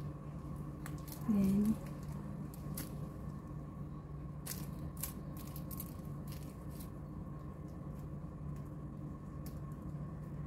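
Thin plastic ice candy bags filled with liquid being handled and set down, giving scattered light crinkles and clicks over a steady low hum. A brief voiced "mm" about a second and a half in.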